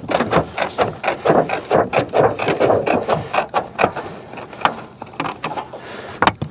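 Hand tin snips cutting through a sheet of metal valley flashing: a quick, irregular run of short, sharp snips.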